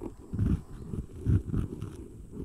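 Close-up ASMR trigger sound: muffled, low rubbing or thumping strokes right against the microphone, repeating about every half second.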